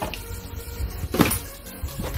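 Cardboard packaging being handled, with a soft rustle and one sharp knock about a second in.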